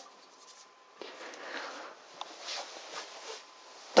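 Faint rustling and rubbing of objects being handled, with a few light clicks, the loudest about two seconds in.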